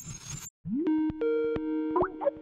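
Electronic video-call ringtone: a short rising tone about half a second in, then steady synthesized tones stepping between a lower and a higher pitch, cut by sharp clicks. A faint hiss comes just before it.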